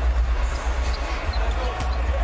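Arena sound from a basketball game broadcast: a ball bouncing on the hardwood court over a steady low rumble of arena noise. The sound starts abruptly.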